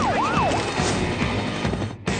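Police siren in a fast yelp, quickly wailing up and down, which stops about half a second in. Loud music with a steady beat plays under it and carries on.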